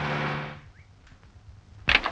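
A man's voice trailing off on a held syllable, then a quiet pause, and a single short sharp knock near the end.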